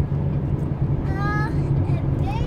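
Car cabin noise while driving: the engine and road make a steady low rumble. A short high-pitched voice sounds briefly about a second in.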